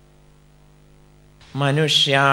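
Steady low electrical mains hum, a buzz of evenly spaced tones, in the sound system. About one and a half seconds in, a man's voice starts reciting much louder over it.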